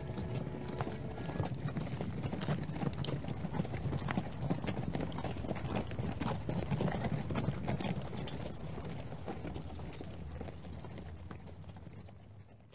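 Galloping hoofbeats, a dense and irregular clatter of hooves that fades gradually over the last few seconds.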